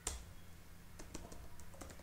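Quiet typing on a computer keyboard: a handful of irregular key clicks, the first the loudest.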